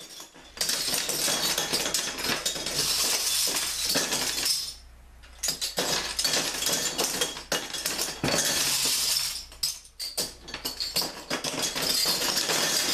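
Metal bottle caps dropped into a glass-fronted shadow box through the slot in the top, clattering and clinking against the glass and onto the pile of caps inside. The clatter comes in long dense runs, with a pause about five seconds in and a short break near ten seconds.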